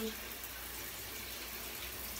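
Steady hiss of running water in a tiled shower stall.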